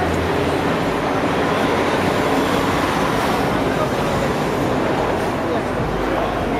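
Busy city street ambience: many people talking at once, with traffic running underneath, steady throughout.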